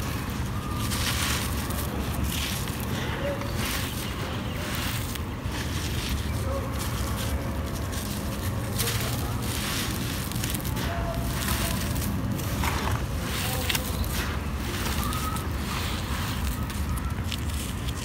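Dry red clay lumps crumbled by hand, with the loose dirt and grit pouring down in a run of small crackles and crunches. A steady low rumble of wind on the microphone runs underneath.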